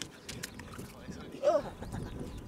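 A hooked fish being dragged up a concrete breakwater on the line, knocking and slapping against the concrete in a scatter of sharp taps. A short voiced cry about one and a half seconds in is the loudest sound.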